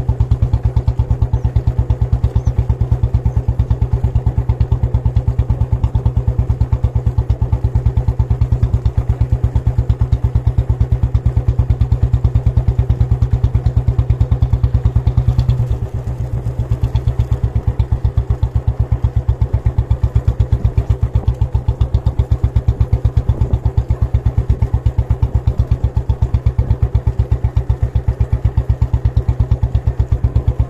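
Motorcycle engine running steadily under way, with an even low pulse. Its note drops briefly about halfway through, then picks up again.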